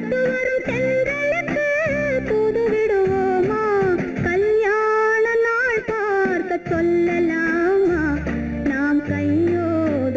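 Old Tamil film duet music: a lead melody that glides and wavers, held long in the middle, over plucked guitar and bass chords.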